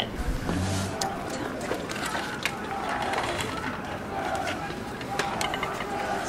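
Low murmur of orchestra players talking quietly among themselves in a large, echoing hall between passages, with scattered small clicks and knocks of instruments and stands. A brief low tone sounds near the start.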